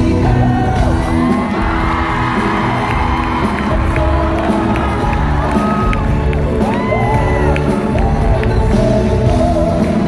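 Live amplified pop music with singers, with the audience cheering and whooping over it.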